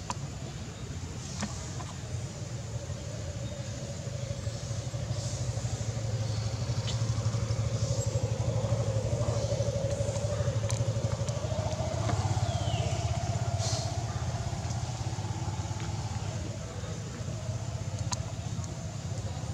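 A motor engine running steadily, growing louder a few seconds in and easing off near the end, with a few faint clicks.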